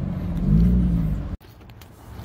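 Car engine and road noise heard from inside the cabin, the engine note rising briefly as the car accelerates to pull over. The sound cuts off suddenly about one and a half seconds in, leaving a much quieter background.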